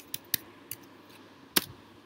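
Computer keyboard keystrokes: a few separate clicks as code is typed, then a louder keystroke about one and a half seconds in as the cell is run.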